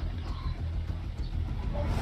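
A steady low background rumble or hum, with no distinct events.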